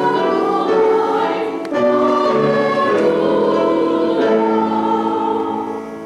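A church congregation singing together in long held notes, the sung response that comes before the Gospel reading. The singing eases off near the end.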